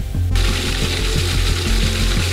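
A food processor switched on about a third of a second in, its motor and blade running steadily as they blend cooked chicken hearts and squash with oil and vinegar into a dough, over background music with a steady bass.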